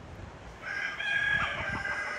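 A rooster crowing: one long call that starts a little over half a second in.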